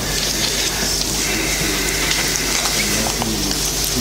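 Steady hiss with a low electrical hum: the constant background noise of a lecture-hall recording.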